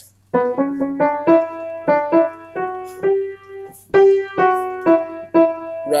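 Piano playing a passage of struck notes, about three a second, each note ringing and fading before the next.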